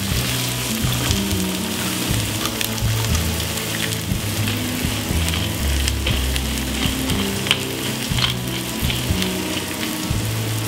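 Mushrooms, green asparagus and freshly added eggs frying in hot oil in a frying pan, with steady sizzling and scattered crackling pops. Background music with low notes plays underneath.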